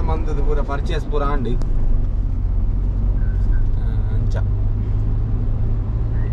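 Steady low rumble of a Renault car's engine and road noise, heard from inside the cabin while it drives, with a few light clicks.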